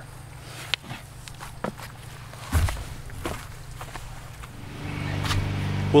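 Scattered knocks and shuffling, with a low thump about halfway in; over the last second and a half a lawnmower engine's steady hum swells up in the background.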